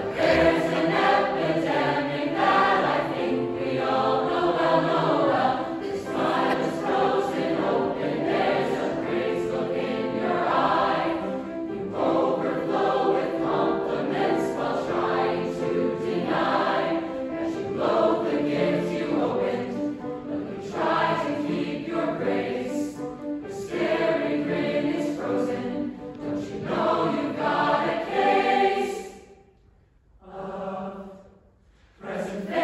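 A large mixed choir of men's and women's voices singing together, the sound cutting off about a second before the end.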